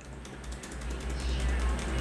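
Laptop keyboard key tapped over and over in quick succession: F1 being hit repeatedly at power-on to get into the BIOS setup.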